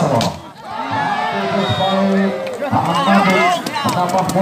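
A volleyball is struck hard at the net just after the start. From about a second in, players and spectators shout and cheer together as the rally ends.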